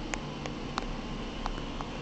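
Low steady hum of an old Otis elevator, with a handful of faint light clicks scattered through it.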